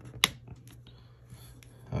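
A single sharp click as the SanDisk iXpand Flash Drive Go's Lightning connector is pushed into the iPhone's port, followed by a few faint ticks.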